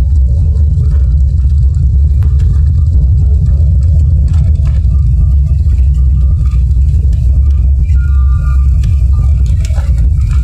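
Loud, steady low rumble heard inside the cabin of a jet airliner as it rolls along the runway after touchdown, with its spoilers up.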